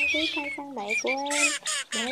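Wild duck calls from a teal lure recording, heard under a man talking in Vietnamese, with a brief burst of sharper, higher calls near the end.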